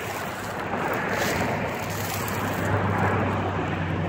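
Outdoor rushing noise of wind on the microphone over a low steady hum, growing slightly louder over the seconds.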